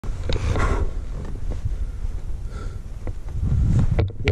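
Wind gusting over a helmet-mounted action camera's microphone as a heavy, uneven rumble, with a few faint clicks.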